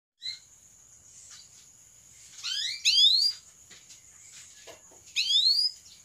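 Domestic canary giving short, fast-rising chirp calls in three bursts, the loudest in the middle. A faint steady high whine sits underneath.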